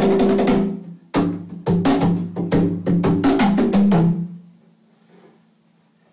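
BoxKit cajón, a walnut box with a maple tapa, played by hand. There is a short burst of slaps and bass tones, a brief pause about a second in, then about three seconds of fast strokes that stop about four seconds in and ring away. The adjustable snare is dialed back until it no longer buzzes, so the tones sound clear.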